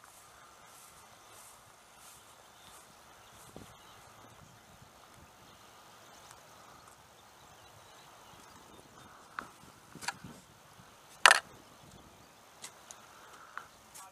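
Faint, evenly paced footsteps on grass, then a few sharp clicks and knocks, the loudest a few seconds before the end, from handling a foam radio-control model airplane.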